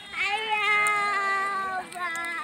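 One long bleat from a herd of goats and sheep, a single drawn-out call lasting over a second.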